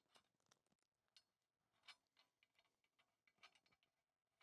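Near silence with a few faint, scattered ticks.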